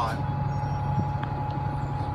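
Steady low rumble of a passenger vehicle running, heard from inside its cabin, with a thin steady whine above it and a couple of faint clicks about a second in.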